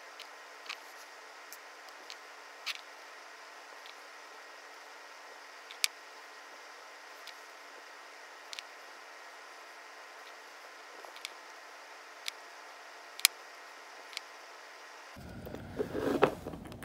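Faint steady hiss with about a dozen small, sharp clicks and taps scattered through it, from fingernails and a nail-polish top-coat brush being handled while coating nails. The two loudest clicks come about six and thirteen seconds in.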